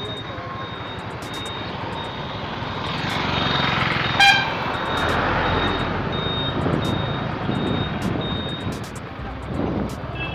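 Scooter riding slowly through town traffic: steady engine, tyre and wind noise, with one short horn toot about four seconds in. A faint high beep repeats about twice a second throughout.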